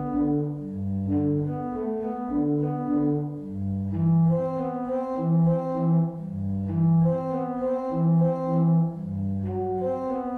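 Bishop & Son pipe organ played on its open diapason stop: a warm, rich sound in slow, sustained chords over a moving bass line, growing fuller about four seconds in.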